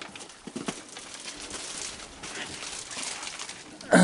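Raccoons feeding on a wooden deck: a run of small clicks and crunches from chewing dry food and moving about. Right at the end comes a short, loud sound that falls steeply in pitch.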